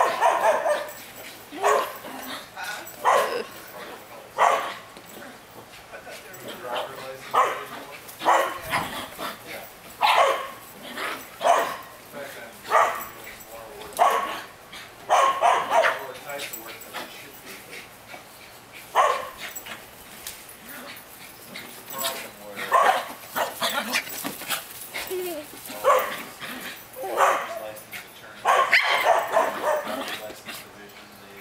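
Small dog barking repeatedly in short, sharp barks, roughly one a second with a few pauses, as it excitedly chases a ball.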